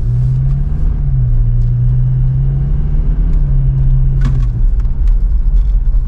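Car interior noise while driving: a steady low engine drone with road noise, heard from inside the cabin. A brief sharper sound cuts in about four seconds in.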